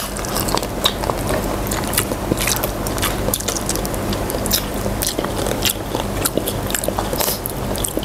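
Spicy chicken feet being bitten and chewed, with wet mouth sounds and frequent sharp crackling clicks as skin and cartilage are pulled from the small bones.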